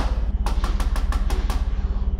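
A quick run of about eight knocks on a door, rapid and evenly spaced, ending about one and a half seconds in, over a steady low hum.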